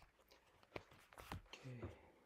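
Faint scattered clicks and small taps, with a brief low murmur of a man's voice near the end.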